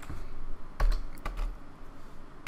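A few keystrokes on a computer keyboard, clustered about a second in, with dull low thuds alongside them.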